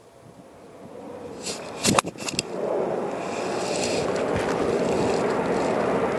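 A golf iron struck cleanly off the turf about two seconds in: a single sharp click of solid contact. After it a steady rushing noise swells in and holds.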